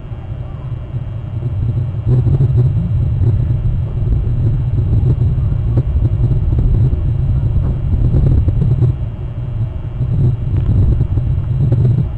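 A loud, steady low rumble with no clear pitch, growing a little louder about two seconds in.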